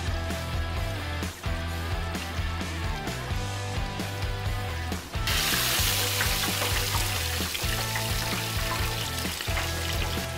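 Battered catfish fillet deep-frying in a fryer's hot oil: a dense sizzle starts suddenly about five seconds in and keeps on, over background music.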